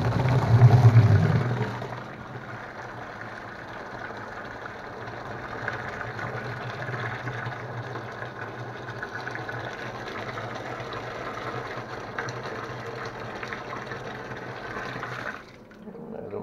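Hot water, at about 80 °C, pouring from the stainless-steel tap of a distillation boiler into a plastic barrel. A steady splashing pour, loudest in the first two seconds, that stops abruptly shortly before the end.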